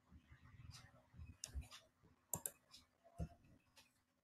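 Near silence with a few faint clicks from a computer keyboard and mouse, the sharpest a pair just past the halfway point and one more near the end.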